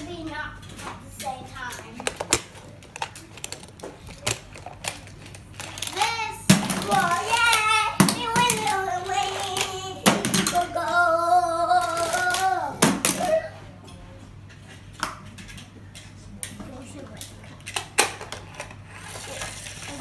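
A young child's voice making two long, wavering wordless calls in the middle, over many sharp clicks and clatters of small plastic and die-cast toy cars.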